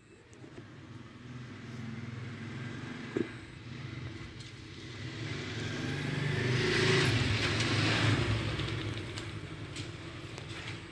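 A motor vehicle passing by: engine noise that builds up gradually, peaks about seven to eight seconds in, then fades.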